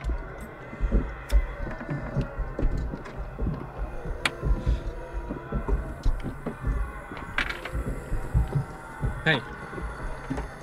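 Many hands thudding and slapping irregularly on a car's windows and body, heard from inside the car, with scattered sharp taps on the glass.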